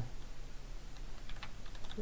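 Computer keyboard typing: several quiet keystrokes as a word is typed out.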